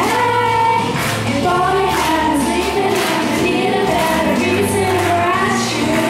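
Girls singing a pop ballad into handheld microphones over instrumental accompaniment, amplified through the stage sound system.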